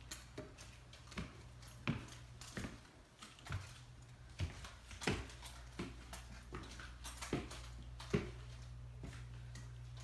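Footsteps climbing wooden stairs, a thud about every three-quarters of a second, stopping a little past 8 seconds in at the top, over a low steady hum.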